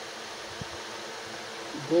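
Steady background hiss with a faint low hum, in a pause between a man's words; his voice comes back just before the end.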